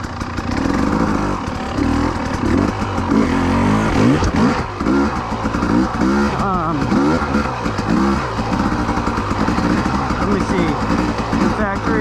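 2020 Husqvarna TE300i's single-cylinder two-stroke engine running while ridden at low speed, its pitch rising and falling over and over with the throttle.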